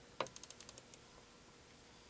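Faint clicking from a MIDIbox sequencer's front-panel controls being worked: one sharper click, then a quick run of about seven small ticks as a knob is turned.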